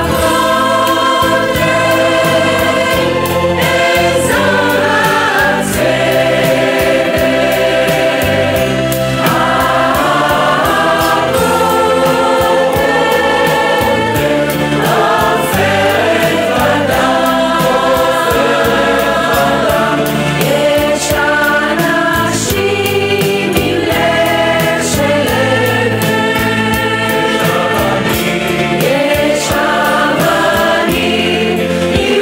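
Mixed choir of men and women singing a medley of Hebrew Six-Day War songs in harmony, over an accompaniment with a steady beat.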